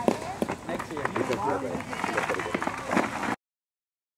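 Indistinct voices of several people talking and calling over one another, with a few short sharp knocks; the sound cuts out abruptly to dead silence near the end.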